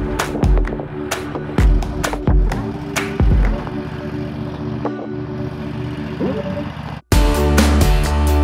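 Background music with a steady beat. It cuts off abruptly about seven seconds in, then resumes louder as a different piece.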